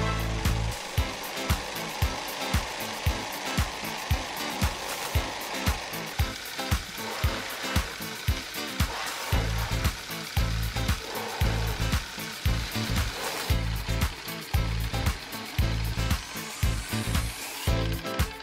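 Wooden Ugears pneumatic engine model running on air from a balloon: regular clacking from its moving wooden parts over a steady hiss of escaping air.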